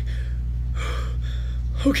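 A man's heavy breath, one short gasp-like exhale about a second in, over a steady low hum.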